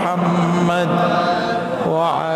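A man's solo voice chanting a slow devotional melody into a microphone, holding long notes that waver in pitch, with a short pause for breath near the end.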